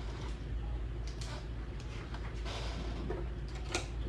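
Soft rustling and handling sounds from a cloth being wiped and moved over the table, with a sharp little click near the end, over a steady low hum.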